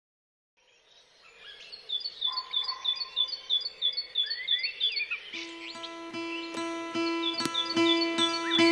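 Forest birdsong fades in, one bird repeating a short high chirp about three times a second among other bird calls. About five seconds in, music begins under it: a held note with a plucked string instrument picking a steady pulse.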